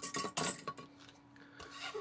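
Plastic Put and Take spinning top clattering on a hard tabletop as it slows and tips onto one of its flat sides, a quick run of clicks and rattles in the first half-second, then much quieter.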